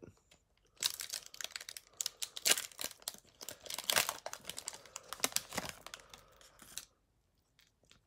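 A foil Pokémon booster pack wrapper being torn open and crinkled by hand. A dense run of crackling starts about a second in and stops about a second before the end, with a couple of faint clicks after it.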